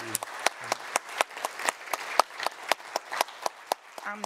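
Audience applauding, many individual claps overlapping.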